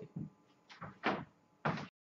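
Four soft thumps and knocks of a person getting up from a chair and stepping away across the room, the last near the end the loudest.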